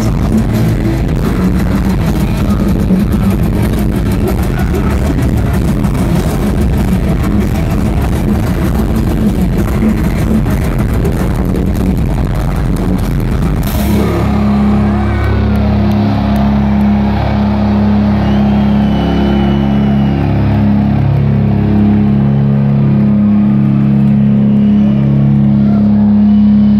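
Live heavy metal band playing loud, with fast drumming and distorted guitars. About halfway through it cuts abruptly to sustained, droning low notes from the amplified guitars and bass, held with only slight changes.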